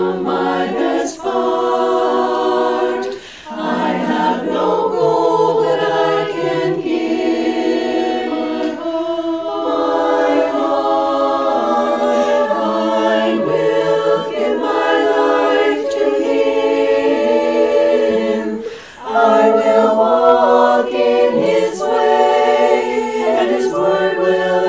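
Women's a cappella choir singing sustained chords in harmony, with two short breaks in the sound, about three seconds in and about five seconds before the end.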